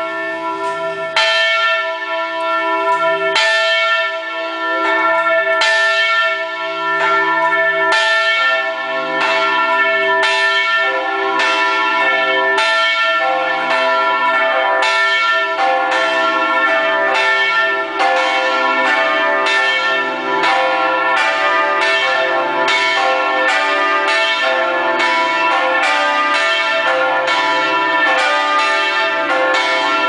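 Carillon bells played as a melody from the keyboard, struck notes ringing on over one another, heard loud from close beneath the bells. The notes come slowly for the first several seconds, then in a busier run.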